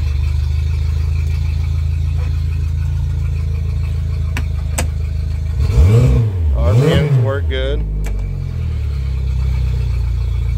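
Pontoon boat's outboard motor idling steadily in neutral, then revved up and let back down twice in quick succession about six and seven seconds in, before settling back to a smooth idle.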